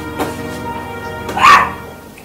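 Background film music with sustained tones, and about one and a half seconds in a woman gives one loud choking cough.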